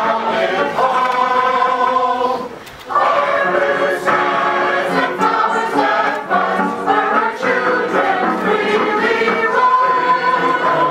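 Mixed choir of men and women singing together in chords, with a brief pause between phrases about two and a half seconds in.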